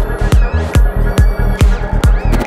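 Psytrance music: a steady kick drum a little over twice a second, with a rolling bassline in between the kicks and sweeping, gliding synth sounds above.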